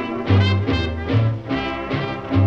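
A late-1920s jazz orchestra playing an instrumental passage of a swing blues. Brass and saxophones carry the tune over a steady bass and rhythm section. The old recording has a dull, narrow sound, with no treble above the middle range.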